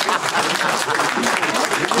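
Crowd applauding: many hands clapping in a dense, even run, with faint voices underneath.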